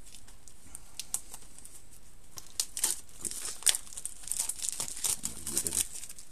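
Crinkling and rustling of a cardboard and plastic product box handled by hand: a couple of light clicks about a second in, then a dense run of crackles through the second half.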